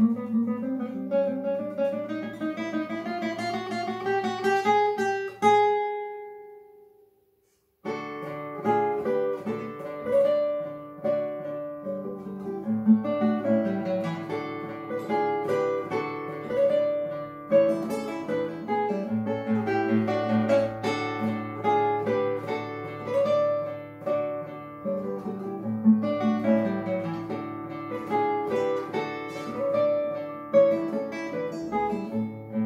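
Solo classical guitar, nylon strings plucked. A rising run ends on a held chord that rings out, and after about two seconds of silence a new passage begins, a repeated note pulsing over a moving bass line.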